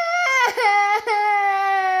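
A three-year-old girl wailing loudly. Her cry breaks twice for a quick catch of breath, about half a second and a second in, then carries on as one long, held wail that slowly falls in pitch.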